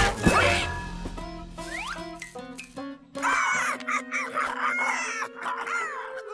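Cartoon soundtrack: a loud crashing sound effect right at the start, then background music, with Donald Duck's squawky voice grumbling over it in the second half.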